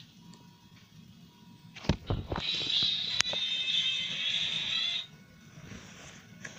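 A television switched on by accident: a few clicks about two seconds in, then roughly three seconds of TV sound with music that cuts off suddenly.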